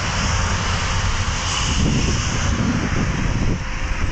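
Steady rush of wind over the microphone of a camera carried on a moving bicycle, with an uneven low buffeting.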